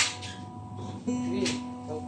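Acoustic guitar being picked: a sharp pluck at the start, then another note about a second in that rings on.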